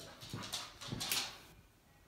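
A dog's short, noisy breaths: a few quick snuffles or pants in the first second or so.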